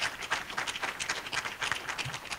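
Audience applauding: many people clapping irregularly at once.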